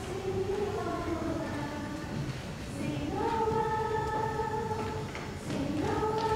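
A small group of eight young singers singing the main theme of a Christmas carol arrangement, in phrases of held notes, with one long sustained note from about three seconds in before a new phrase begins near the end.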